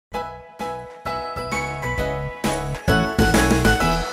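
Short intro music jingle: a run of pitched, bell-like notes over a bass line. The notes come faster and louder toward the end.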